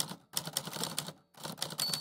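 Typewriter sound effect: rapid key clacks in three quick runs, then the carriage-return bell dings near the end.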